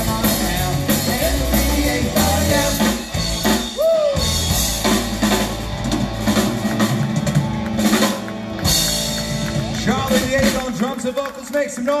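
Live rock band playing: drum kit, bass and electric guitars with singing. Near the end the band drops out, leaving mainly voice.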